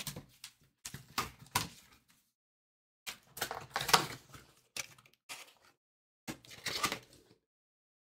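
Cardboard trading-card boxes being handled and opened: rustling and scraping cardboard in three irregular clusters of bursts, separated by silent gaps.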